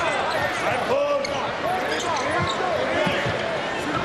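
Basketball court game sound: the ball bouncing on the hardwood floor and many short squeaks, with voices in the arena behind.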